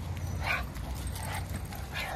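Two dogs playing face to face, mouthing at each other, with short dog play noises about half a second in and again near the end, over a low steady rumble.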